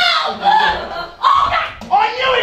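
A performer's voice making three short, pitched, wordless cries in quick succession, with low thuds of a wooden stage box being tipped over onto the stage.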